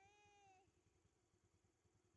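Near silence, with a very faint held note that falls slightly in pitch and stops about half a second in.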